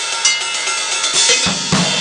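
Drum kit played with shattered cymbals: clanky metallic cymbal strikes over a dense, ringing wash, with two low drum hits in the second half.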